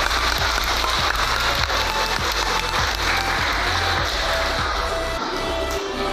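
Applause from a congregation over music with shifting low bass notes; the clapping thins out about five seconds in.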